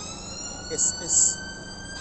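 An emergency vehicle siren wailing in the street, its pitch gliding slowly upward.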